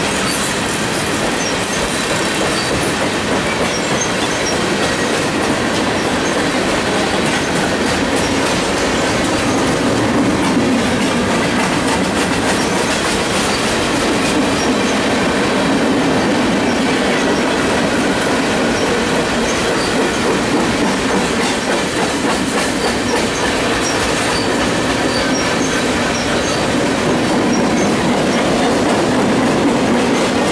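Freight cars of a passing freight train rolling by close at hand: a steady, loud rolling noise of steel wheels on rail with faint, brief high-pitched wheel squeals now and then.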